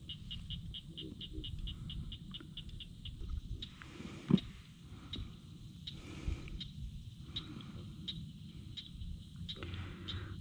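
A small animal calling in a rapid, even series of high clicks, about six a second, for the first three and a half seconds, then a few scattered clicks, over a low steady rumble.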